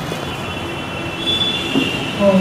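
Steady hiss and hum of a hall's public-address microphone between recited lines, with a faint high-pitched ringing tone coming in about a second in.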